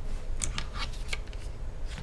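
A few small sharp clicks and handling sounds as a MacBook Pro battery's cable connector is unclipped from the logic board and the battery is lifted out of the case, over a low steady hum.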